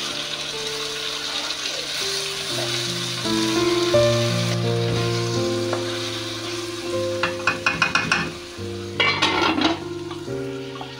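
Chopped tomatoes and onions sizzling in hot oil in a steel pan while being stirred with a spatula. Near the end comes a quick run of sharp strokes against the pan, then a clatter as a steel lid is set on it.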